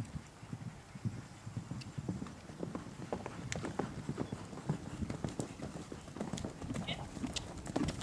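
A horse's hooves thudding on grass turf at a canter: a run of dull thuds with occasional sharper clicks.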